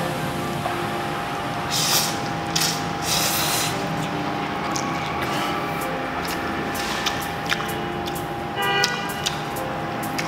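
Noodles being slurped in a few short hissy bursts, about two to three and a half seconds in, over background music with sustained tones.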